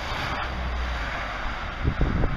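A Ford Tempo driving away, its engine running as a steady low rumble with road noise, and wind on the microphone.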